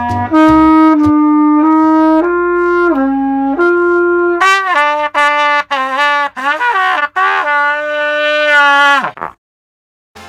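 Trumpet played solo: a run of slow, held notes stepping up and down, then a quicker phrase with slurred bends, ending on a long held note that cuts off suddenly near the end.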